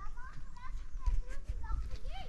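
A child's high voice in short, broken bits, with a few sharp knocks of stone on stone as blocks are set on a dry-stone wall.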